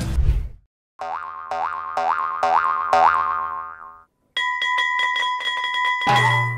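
Cartoon sound effects: five springy rising boings about half a second apart. After a brief pause comes a fast, repeating bell-like ring.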